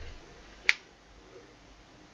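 A single sharp click about two-thirds of a second in, over faint room noise.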